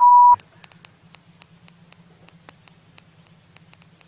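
A short, loud electronic bleep tone, one steady pitch for about a third of a second at the very start, then a quiet stretch with faint scattered ticks over a low hum.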